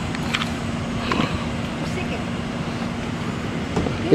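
Steady street background of idling vehicle engines and road noise, with a low steady hum and a few faint ticks.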